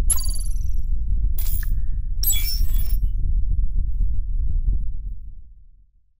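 Logo-intro sound effect: a deep bass rumble that fades out near the end, with a few short bright high-pitched hits on top in the first three seconds.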